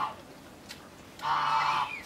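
Bear cub calling in short repeated bouts: the end of one call at the very start, then a second call of about half a second starting just over a second in.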